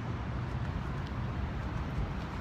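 Steady low rumble of outdoor urban background noise.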